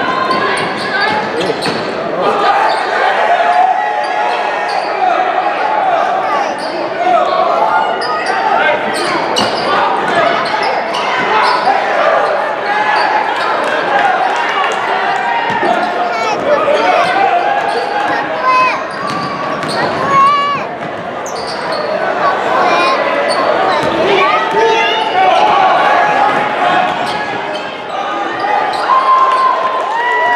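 A basketball bouncing on a hardwood gym floor during live play, under the steady shouting and chatter of players, benches and spectators in a large gym.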